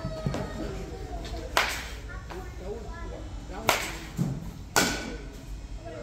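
A baseball bat hitting balls in a batting cage: three sharp cracks, about a second and a half in, near four seconds and near five seconds, with voices talking in the background.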